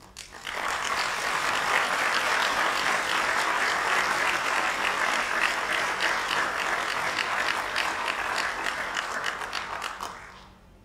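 Audience applauding: clapping breaks out about half a second in, holds steady, then drops away sharply at the end.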